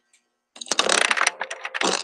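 A dense burst of rapid clicking and rustling that starts about half a second in and runs on, heard through a video-call microphone.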